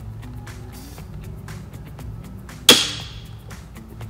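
Browning X-Bolt rifle dry-firing as a trigger pull gauge breaks the trigger: one sharp metallic snap of the firing pin falling about two and a half seconds in, with a short ringing tail.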